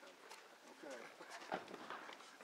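Faint, indistinct voices with feet shuffling on a dirt floor, and one sharp knock about one and a half seconds in.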